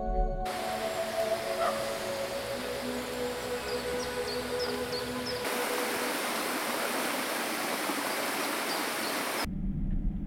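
Rushing water of a small woodland waterfall spilling over rocks into a pool: a steady, even hiss of falling water. About halfway through it turns louder and brighter.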